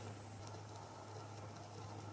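Quiet room tone: a steady low hum with a few faint soft ticks.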